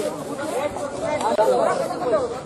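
Speech only: people talking, with overlapping voices and no other distinct sound.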